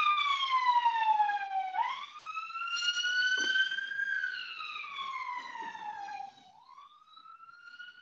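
An emergency vehicle siren wailing: a single tone sliding slowly down, then back up and down again over a few seconds, growing faint after about six seconds.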